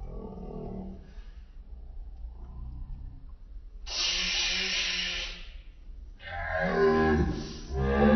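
People straining against the heat of very hot wings: low grunting, then about four seconds in a loud hissing breath drawn through the mouth for a second or so, and near the end a loud, drawn-out, wavering groan.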